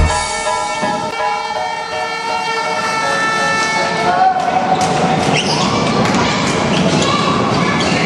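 Live basketball game sound in a gym: crowd chatter and voices echoing in the hall, with sharp knocks of a basketball bouncing on the hardwood floor. It begins as the tail of a music track dies away over the first few seconds.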